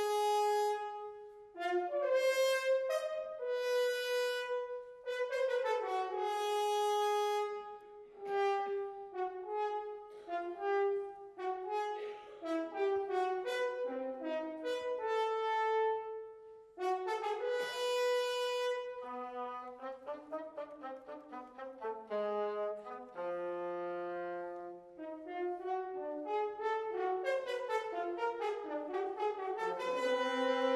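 Wind band playing a live film score, brass to the fore, in phrases of held notes. A little past the middle a quieter line of low notes steps downward, and the band swells into a loud held chord at the end.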